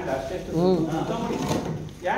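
A person talking, with pitch rising and falling, and a brief pause near the end.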